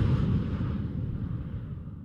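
The tail of a whoosh sound effect: a low rumble that fades steadily away.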